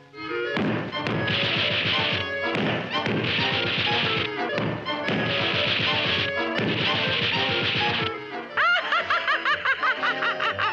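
Cartoon sound effects of a rope-worked wooden boot contraption swinging and whacking: four bursts of rapid hits, each about a second long, over music. Near the end comes a cartoon character's laugh in quick bouncing pulses.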